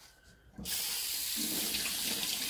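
A water tap turned on about half a second in, then running steadily into a sink during dishwashing.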